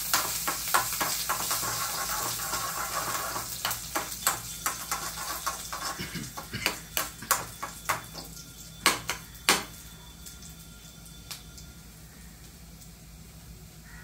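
Hot oil sizzling in a small metal kadai on a gas stove while a spoon stirs it, then a run of sharp, irregular pops and clicks from about four to ten seconds in, loudest near nine seconds, before the sizzle dies down. This is the spluttering of a tempering (tadka), with the recipe's mustard seeds and dry red chillies in the oil.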